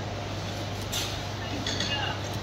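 Steady ambience of a crowded event hall: a constant low hum under noise, with faint, indistinct voices and a brief sharp click about a second in.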